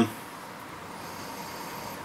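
Faint, steady room hiss with no distinct sound events.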